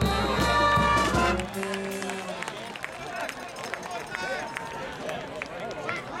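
Band music with brass horns, which breaks off about a second and a half in; one held note lingers until about two seconds. After that, crowd chatter and voices on the sideline fill the rest.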